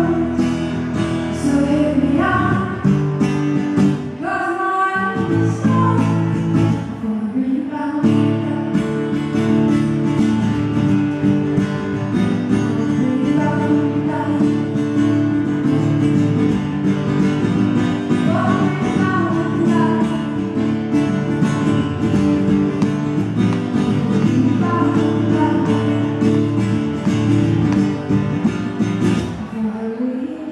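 Live acoustic pop performance: a woman singing into a microphone over a strummed acoustic guitar, with sung phrases rising and falling over steady chords.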